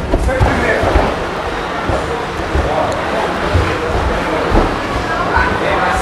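Indistinct voices of coaches and onlookers calling out in a large indoor hall, over repeated low thumps.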